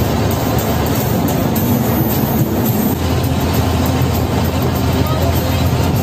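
Ashok Leyland diesel bus engine and road noise heard from inside the cabin while cruising on the highway, a steady low drone with no gear changes or sudden sounds.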